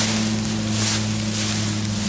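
Footsteps swishing through tall grass at a slow walking pace, a brushing hiss with each stride, over a steady low hum.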